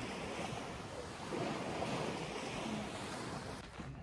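Sea waves washing onto a sandy beach: a steady rush of surf.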